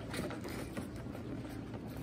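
Cardboard door of an advent calendar being pried and pulled open by hand, with faint rustling and scraping of the card as a small jam jar is worked out of its compartment.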